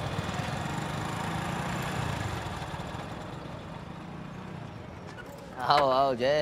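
Street ambience with a low rumble that slowly fades over the first few seconds. Near the end a man's voice calls out loudly.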